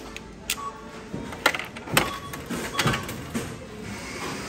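Coins dropped one after another into a coffee vending machine's coin slot, each giving a sharp metallic clink as it falls through the coin mechanism: about five clinks, the loudest about one and a half and two seconds in.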